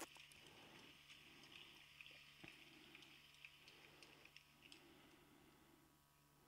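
Near silence: room tone with a faint steady hum and a few soft clicks.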